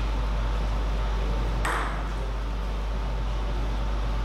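A plastic table tennis ball bouncing once, about one and a half seconds in: a sharp tick with a short ringing tail. A steady electrical hum runs underneath.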